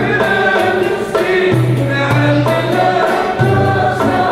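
Live traditional Algerian music: a male voice singing with instrumental accompaniment, with a steady beat of percussion strokes.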